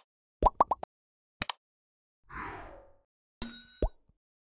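Sound effects for an animated subscribe button. First a quick run of three or four rising pops, then a double mouse click and a soft whoosh, and near the end a bell ding followed by one more short pop.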